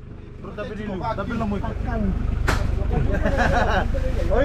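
Voices chattering over the steady low running of a lorry's engine at idle, with one sharp knock about two and a half seconds in. The sound fades up over the first two seconds.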